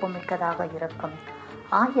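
A woman's voice reciting in Tamil, with some long held syllables and a louder syllable near the end.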